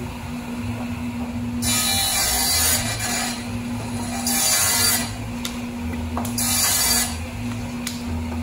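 Jobsite table saw running with a steady hum, cutting through a board three times, each cut a loud hissing rip lasting about a second.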